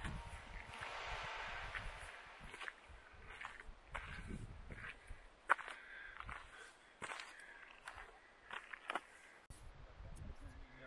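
Quiet, uneven footsteps on a sandy trail.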